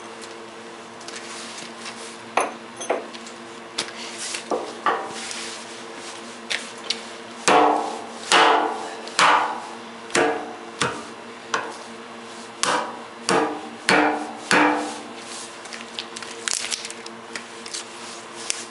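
A hammer striking a burnt, punctured Headway 38120 lithium iron phosphate cell clamped in a vise: a few lighter blows first, then heavier blows in quick succession less than a second apart, each with a short metallic ring.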